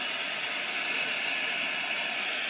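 Lampworking glass torch burning with a steady hiss.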